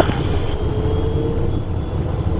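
Cabin noise in the cockpit of a Cessna Citation Encore at the start of its takeoff roll: a steady low rumble from the twin turbofans at takeoff power and the wheels on the runway, with a faint high whine that edges slowly upward.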